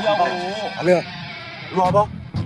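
A man speaking Korean dialogue in a wavering, drawn-out voice.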